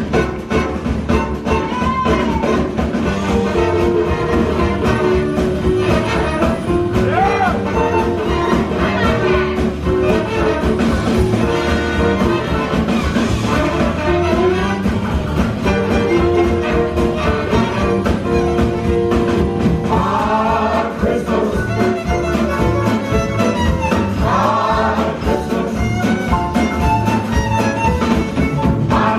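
A live hot-jazz swing band playing a holiday tune: drum kit, upright bass, banjo, fiddle and a horn section of trumpet, trombone and saxophone, held horn notes over a steady beat.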